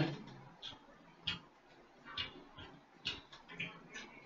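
Mouth sounds of eating fried chicken: chewing and lip smacking, heard as about six short, sharp smacks spaced irregularly.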